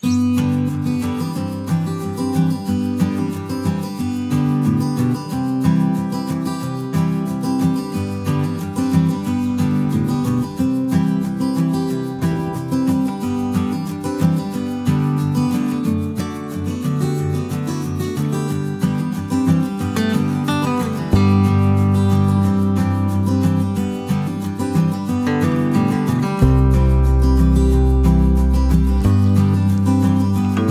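Background music led by strummed acoustic guitar, starting abruptly, with deeper bass notes joining in the last third.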